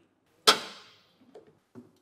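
One sharp click about half a second in, fading out over about half a second, then a few faint ticks: the plastic squeezing cups of an automatic orange juicer being handled and taken off for cleaning.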